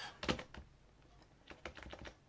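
Computer keyboard keystrokes: a few key presses in the first half-second, then a quick run of several near the end.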